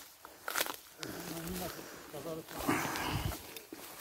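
Footsteps on dry leaf litter and the rustle of ferns and brambles being pushed aside while walking through dense undergrowth, loudest near the middle, with brief faint voice sounds in between.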